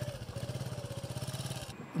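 A small engine running steadily in the background with an even, rapid putter, cutting off abruptly near the end.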